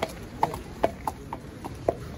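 A horse's hooves clip-clopping on an asphalt road as it walks past close by: about seven hoofbeats at roughly three a second, which stop shortly before the end.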